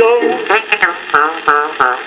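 Old Regal shellac record playing on a record player: a run of short, voice-like calls, each falling in pitch, in the thin, boxy sound of an old recording. Sharp surface-noise clicks from the disc run through it.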